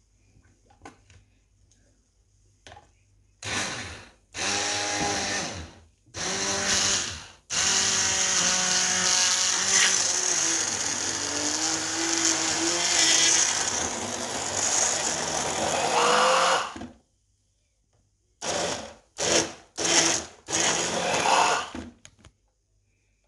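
Philips electric stick blender running in a tall beaker, puréeing tomatoes and vegetables for a chilli sauce. It starts with three short bursts, then runs continuously for about nine seconds with its pitch wavering as the blades meet the food, and ends with several quick pulses.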